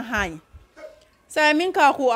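A woman's voice speaking, broken by a short pause of under a second near the middle.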